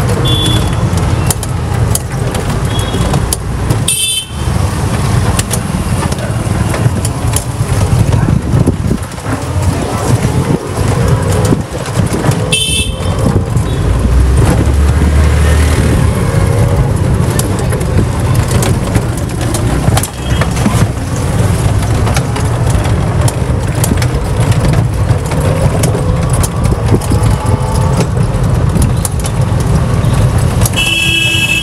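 Street traffic heard from a moving rickshaw: a steady low rumble of the ride, with a vehicle horn sounding briefly twice, a few seconds in and about halfway through.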